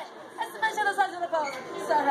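People talking: several voices chattering at once, with no other distinct sound.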